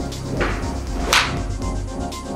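A golf club swung at the ball: a quick rising swish about a second in as the club whips through, over background music.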